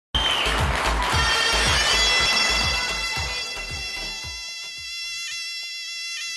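Mezoued, the Tunisian bagpipe, playing loud held reedy tones over fast, heavy drum beats; the drums drop out about four and a half seconds in, leaving the pipe tones alone.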